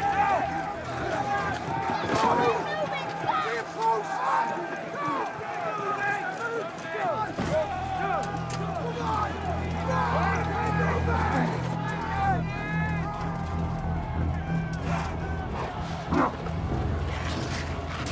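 Battle sound mix: many men shouting and screaming over one another, with scattered sharp clashes and impacts, over a low sustained film score that swells about seven seconds in.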